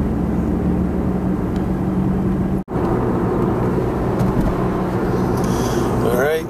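Car cabin noise heard from inside a moving car: a steady engine hum under road noise. It drops out for an instant about two and a half seconds in, where the recording is cut.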